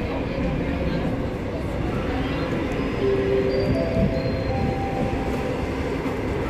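Seoul Metro Line 9 subway train running in a tunnel, heard from inside the car: a steady rumble of wheels and running gear. About halfway through, a few short steady tones step up in pitch one after another.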